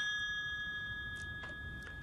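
A single bell-like ding from a novelty election pen, ringing with several clear tones and slowly fading away. Two faint clicks come late on.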